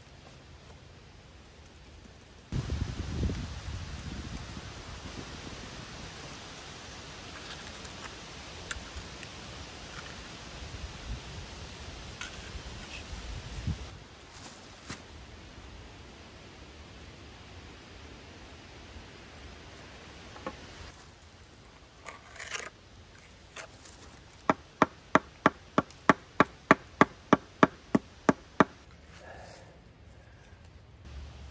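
Rustling and scraping of gloved hands working wet mortar along the top of a fieldstone wall around a treated 2x4. Near the end comes a quick run of about a dozen sharp knocks, about three a second, the loudest sound, as the board is tapped down into the mortar.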